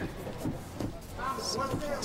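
Fight commentary: a commentator's voice talking quietly in the second half, over low arena background noise.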